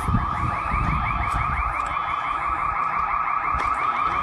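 Car alarm sounding, a fast, steady run of repeated rising chirps, set off by the earthquake shaking, with low rumbling noise underneath.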